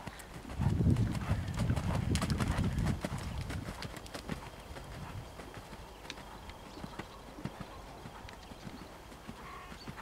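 Horse cantering on a sand arena surface, its hoofbeats coming as short repeated thuds. A loud low rumble covers the first few seconds.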